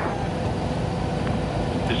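A steady rushing noise with no clear pitch, strongest in the low end, on a live broadcast audio feed.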